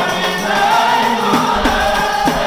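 Men's voices singing a Swahili Maulid praise song (qaswida), a lead singer on microphone with a chorus, accompanied by frame drums beaten in a steady rhythm.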